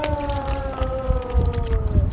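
A child's long drawn-out vocal 'ooh', held for about two seconds and slowly falling in pitch, over a low rumble.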